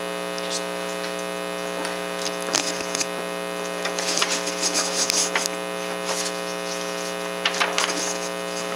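Steady electrical mains hum, a buzzy drone with many overtones. Light rustles and clicks come and go over it, busiest from about four to five and a half seconds in.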